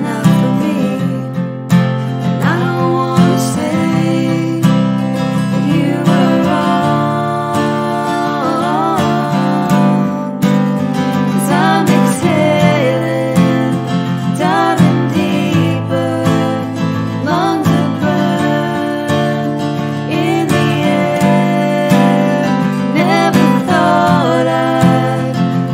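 Acoustic guitar strummed in steady chords, with two women's voices singing over it in harmony, lead and backing vocals.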